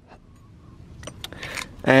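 Metal shifter parts handled and picked up off concrete: a few light clicks and ticks, starting about a second in.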